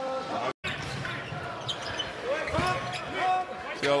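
A basketball being dribbled on a hardwood court over a steady arena crowd hum. The sound cuts out completely for a moment about half a second in.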